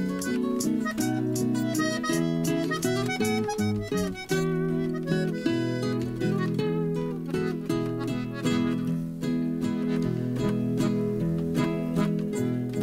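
Instrumental introduction of a Mexican song played live on a button accordion holding steady chords and two acoustic guitars strumming and picking notes, with no voice yet.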